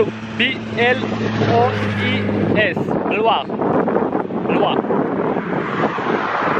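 Wind buffeting the microphone, with a low steady motor hum underneath that stops about two and a half seconds in.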